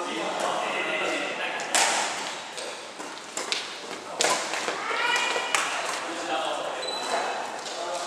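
Badminton rally: a few sharp racket-on-shuttlecock hits, the loudest three spread about a second and a half to two and a half seconds apart.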